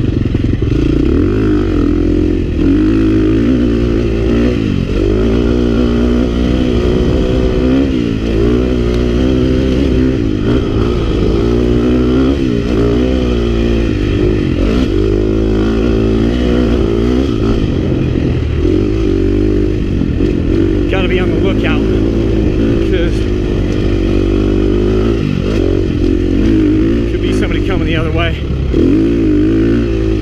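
KTM 350 XC-F dirt bike's single-cylinder four-stroke engine under way on a dirt trail, its pitch rising and falling again and again as the throttle is worked and gears change.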